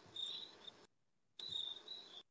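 Crickets chirping faintly over a video-call microphone: a high, pulsing trill that cuts out completely for about half a second about a second in.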